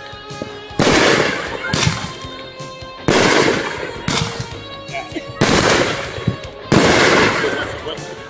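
Fireworks going off: a string of sharp bangs, about five in eight seconds and unevenly spaced, each trailing off over about a second.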